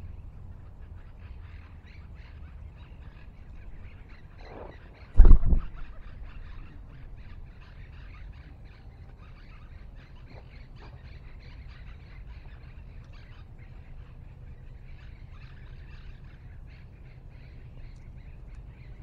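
Small birds chirping faintly and continuously over a steady low background rumble, with one loud, short low thump about five seconds in.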